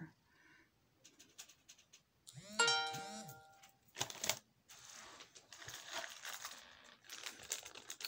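A short two-swell hum about two and a half seconds in, then packaging rustling and crinkling with small clicks as jewelry is handled and unwrapped.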